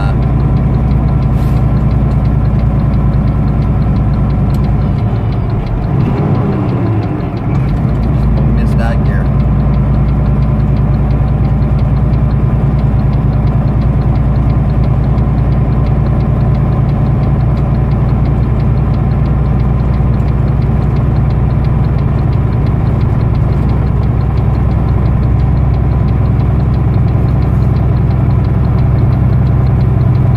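Semi truck's diesel engine pulling a loaded rig uphill, heard from inside the cab as a steady low drone. The engine sound briefly drops and wavers about six to seven seconds in, then steadies again.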